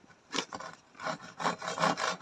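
Hand saw rasping on a small log in short back-and-forth strokes: a single stroke, then from about a second in a quicker run of about three strokes a second, growing louder.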